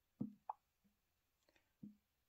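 Near silence with a few faint, short, soft taps: a fingertip tapping the glass touchscreen of a Samsung Galaxy S23 Ultra.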